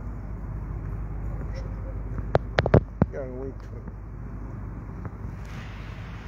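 Street ambience with a steady low rumble. About two and a half seconds in come a quick run of four or five sharp clicks, then a brief voice.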